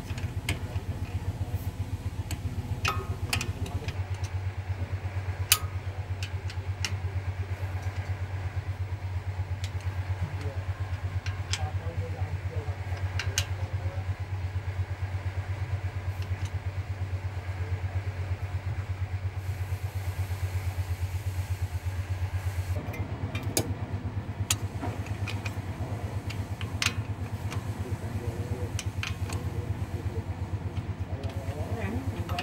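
A steady engine idling with a fast, even pulse, with scattered sharp metallic clicks of hand tools against engine parts.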